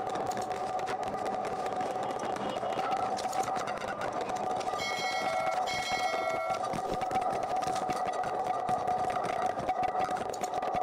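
A steady droning hum from a background soundtrack, with two short ringing tones about five and six seconds in.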